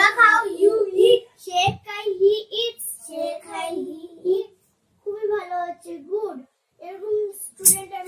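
Children's voices chanting in a sing-song, in short phrases with brief pauses between them.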